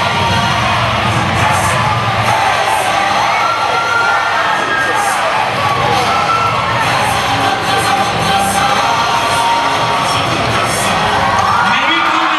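Crowd of young people cheering and shouting continuously, with music playing underneath.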